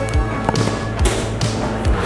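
Background music with a steady drum beat, about two beats a second.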